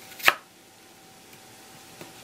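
A kitchen knife cuts through a thick round of peeled daikon radish, halving it into half-moons. It makes one crisp stroke that ends in a sharp knock of the blade on the wooden cutting board about a quarter second in.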